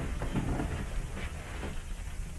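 A pause in a conversation on an old tape recording: steady low hum and hiss of the tape and room, with no clear sound event.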